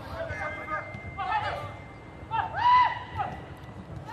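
Voices shouting and calling out on a football pitch, in three bursts; the loudest is a long, drawn-out call about two and a half seconds in.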